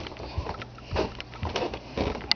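Handling noise close to the microphone: a few soft bumps and rustles, about one every half second to second, as the camera is set down on its charger.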